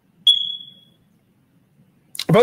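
A single high-pitched beep, about a quarter second in, that sets on sharply and fades away within about three quarters of a second.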